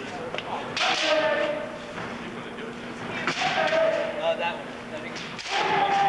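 Kendo fighters' kiai: three long shouted yells, about two and a half seconds apart, each starting with the sharp impact of a strike.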